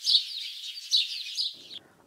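Small birds chirping in quick, high twitters, fading out near the end.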